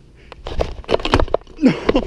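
A half-cut BMX frame held together with Flex Tape giving way under a rider: a quick run of sharp cracks and knocks as the rubberized tape rips off and the frame halves clatter onto brick pavers. A short vocal yelp follows near the end.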